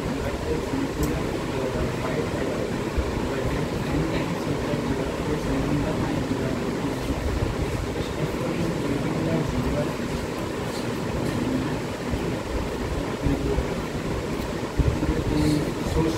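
Indistinct talking in a room over a steady low hum of background room noise.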